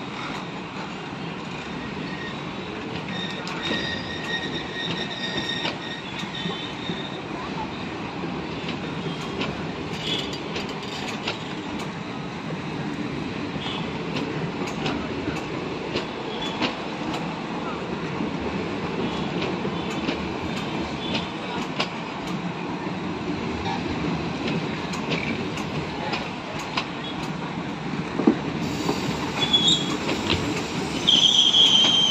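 Passenger coaches of an Indian Railways express rolling past on the rails: a steady rumble of wheels with scattered clicks over rail joints. A high squeal sounds for a few seconds early in the passage, and the noise grows louder near the end.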